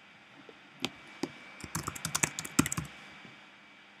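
Typing on a computer keyboard: two single keystrokes about a second in, then a quick run of keystrokes lasting just over a second as a short name is typed into a text field.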